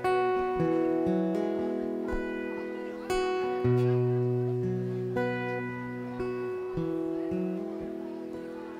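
Two acoustic guitars playing a slow country song's intro: chords struck and left to ring, a new chord every second or two, growing softer near the end.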